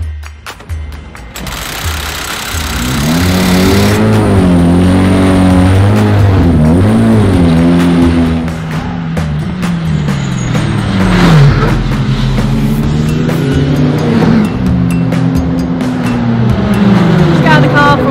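Racing car engines revving hard on a circuit, their pitch climbing and dropping again and again through gear changes and braking.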